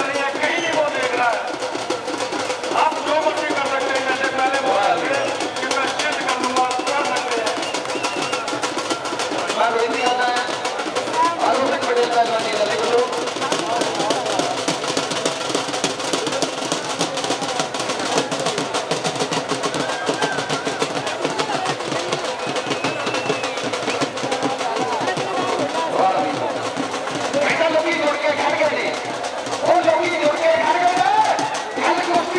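Drums beating in a fast, unbroken roll, with indistinct voices calling over them.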